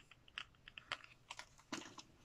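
A run of faint, irregular clicks and taps, about a dozen in two seconds, as small items are handled: earrings on cardboard display cards being set down and picked up.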